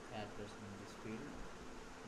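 A low, indistinct voice murmuring in short broken stretches, too quiet or unclear to make out words.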